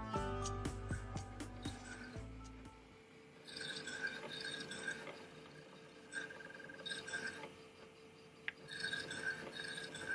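Background music fading out over the first few seconds, then an opened Apple Disk II floppy drive working through a disk test, heard as several short bursts of mechanical buzzing a second or so apart. The drive is passing the test without errors.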